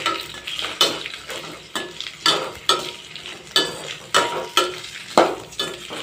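Metal spatula scraping and knocking against a stainless steel kadai, about twice a second, as sliced ivy gourd is stirred, over a low sizzle of frying. Some strokes ring briefly off the steel pan.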